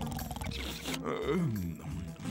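A man snoring loudly in his sleep: a rattling snore on the in-breath, then a falling, whistle-like out-breath. Background music plays under it.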